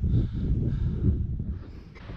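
Wind buffeting the microphone: an irregular low rumble that fades away near the end.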